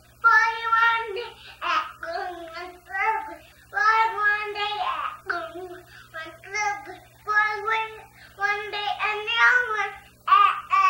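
A young child singing a children's song unaccompanied in a high voice, in short phrases with brief breaths between them.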